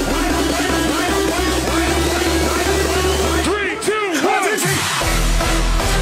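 Psytrance dance track with a driving, rolling bassline. About three and a half seconds in, the bass drops out for a short break of repeated synth glides that rise and fall in pitch, and the bass comes back in at about five seconds.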